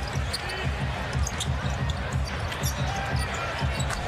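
Basketball game sound in an arena during live play: steady crowd noise, the ball being dribbled on the hardwood court and sneakers squeaking.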